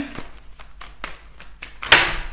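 A deck of tarot cards being shuffled by hand, with faint flicks and ticks of the cards, then a sudden loud slap near the end trailing off in a brief rush of cards as the whole deck falls out.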